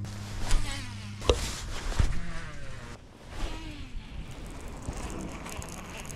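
A steady low hum that stops about a second in, followed by two sharp knocks less than a second apart.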